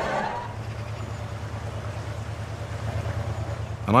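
A steady low engine hum, like a boat engine running, with no clear changes.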